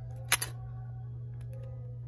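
Scissors clicking shut twice in quick succession about a third of a second in: two sharp metal clicks, the second softer, over a steady low hum.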